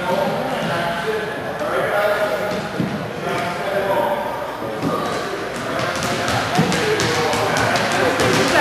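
Basketballs bouncing on a hardwood gym floor, the bounces coming several a second from about five seconds in, over the indistinct chatter of children's voices echoing in the gym hall.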